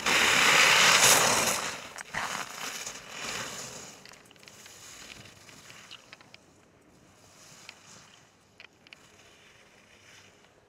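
Ski edges carving and scraping on firm, groomed snow: a loud hiss as the racer passes close, then several shorter swells, one per turn, fading as the skier moves away down the course.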